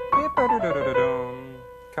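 Piano playing a short melodic phrase: a few quick notes, then one note held and dying away.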